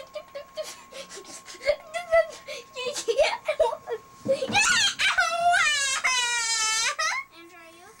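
A young boy's voice: short grunts and broken vocal sounds, then one long, high-pitched cry about five and a half seconds in, as he tumbles headfirst out of a clothes dryer drum onto the floor.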